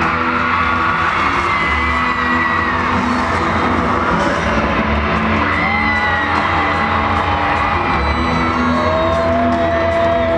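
Music playing loudly through an arena sound system with a steady bass pattern, and a crowd cheering and screaming over it, with long high screams.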